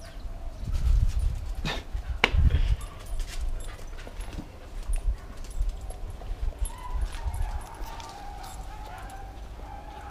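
Two excited dogs jumping up at a person, whining and yipping, with heavy thumps and bumps against the camera about a second and two and a half seconds in. A thin, drawn-out dog whine runs through the last few seconds.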